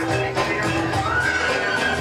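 Hip-hop track with a heavy beat playing over a PA, its shrill, whinny-like squealing sample arching up and down about halfway in.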